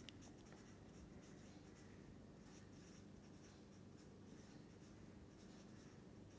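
Faint scratching of a felt-tip marker writing on paper, in many short strokes.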